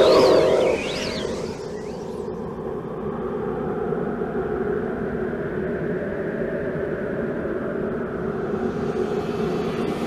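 A steady, droning rumble from the animatronic show's soundtrack: the effect of the Adventure Machine travelling. Sliding cartoon-like sounds fade out about a second in.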